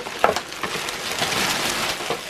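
Plastic carrier bag and cellophane-wrapped packets rustling and crinkling as a bagful of packaged items is tipped out onto a bed. A few soft knocks come as boxes land, the sharpest just after the start.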